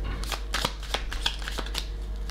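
A deck of tarot cards being shuffled by hand: an irregular run of short clicks and rustles.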